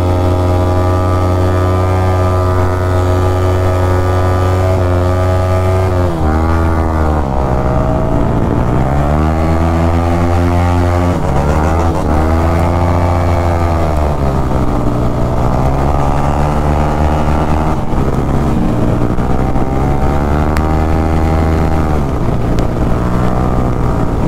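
Yamaha R15's single-cylinder engine heard from the rider's seat at road speed: steady at first, then its pitch drops and climbs again several times as the throttle is closed and reopened through the gears, holds steady, and rises near the end as the bike accelerates.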